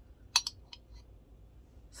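A sharp clink about a third of a second in, followed by a few faint ticks: the handle of a small ceramic cauldron oil burner knocking against the metal hook of its stand as it is unhooked and handled.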